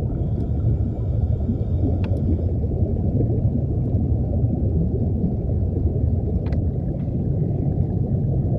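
Steady low underwater rumble, with a faint click about two seconds in and another about six and a half seconds in.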